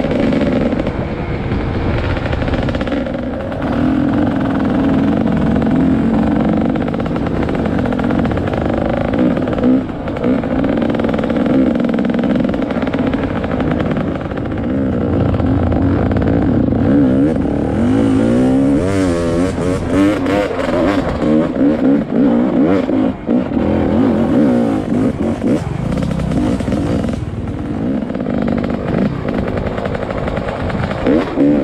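Trail dirt bike engine heard from the rider's helmet, running hard along a dirt track with the revs rising and falling as the throttle is worked. About two-thirds of the way through the revs swing up and down quickly several times.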